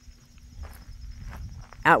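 Faint footsteps during a pause in speech, with a low rumble underneath; a woman's voice starts again near the end.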